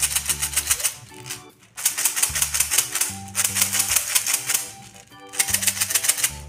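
Background music with a stepping bass line, overlaid by dense, very rapid clicking that breaks off briefly twice.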